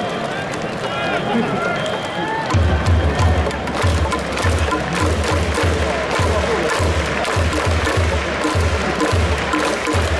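Ballpark crowd noise, then from about two and a half seconds in, music with a heavy low drum beat over the stadium sound system, with the crowd going on underneath.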